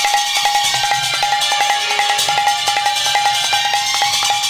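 Instrumental break in a Bengali kirtan: a Roland XP-10 keyboard holds one steady note while metallic hand percussion strikes in a fast, even run. A drum plays low underneath.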